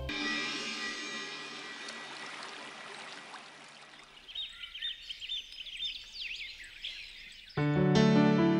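Title music fading out, then birds chirping with quick rising and falling calls for a few seconds. Soft background music starts suddenly near the end.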